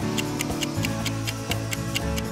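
Countdown-timer ticking sound effect over light background music: steady, evenly spaced ticks.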